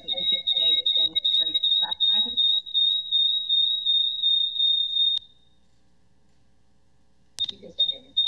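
A steady high-pitched whine with a fainter lower tone beneath it, over faint, broken speech. About five seconds in, all the sound cuts out for about two seconds, and then the whine and the voices come back.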